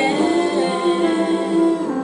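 A woman singing unaccompanied, holding one long note for over a second before a short break near the end.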